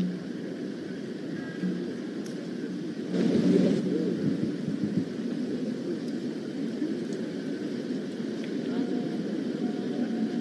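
Steady low outdoor rumble with indistinct voices murmuring, growing louder for about a second around three seconds in.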